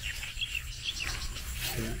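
Outdoor ambience of short, high chirps from insects and birds over a low, steady rumble.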